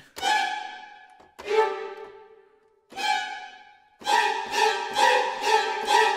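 Sampled string-ensemble stings from ProjectSAM Symphobia's Ghostly Strings 'Killer Bees' sting articulation, played from a keyboard: three short stabs that each ring away over about a second, then a quicker run of repeated stabs, about three a second, near the end.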